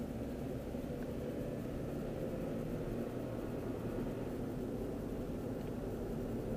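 Steady low rumble of a car's engine and tyres on the road, heard from inside the cabin while driving at a constant pace.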